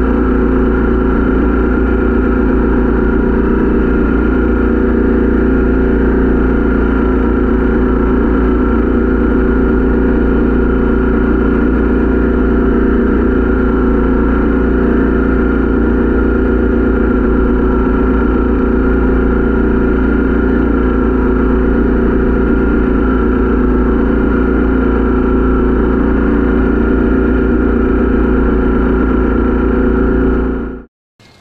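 SCAG V-Ride stand-on mower's engine running at a steady speed, with its front-mounted Umount blower blowing leaves and debris off the curb.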